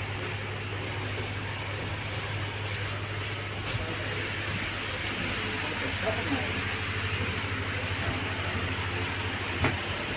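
Steady low mechanical hum with an even wash of noise, the room sound inside a railway coach, with faint voices in the background and two short knocks, one about four seconds in and one near the end.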